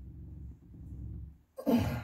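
A low, muffled rumble as a lug nut is strained against with a universal socket on a ratchet. About a second and a half in, a man clears his throat.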